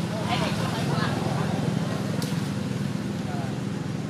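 A steady low engine drone, like a vehicle running nearby, with a few short high vocal calls in the first second.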